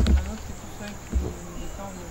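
Insects chirring steadily in a high register, under two low thumps, one at the start and one a little past a second in, with faint voices.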